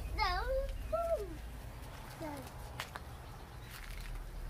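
A young child's high, wordless sing-song vocalizing in the first second and a half, with one short further sound about two seconds in, over a low steady rumble.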